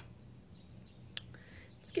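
Faint birds chirping in the background, with one sharp click about a second in.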